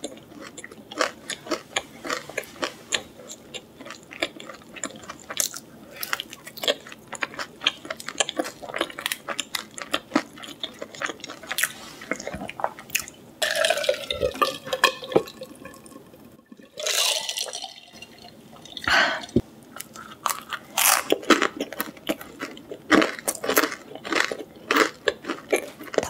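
Close-up chewing of a crunchy pizza crust: a quick run of small crunches and mouth clicks. About halfway through come swallows of a drink from a glass, and then the crunching chewing starts again.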